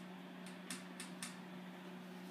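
Quiet room tone: a steady low hum, with four faint, short clicks in the middle.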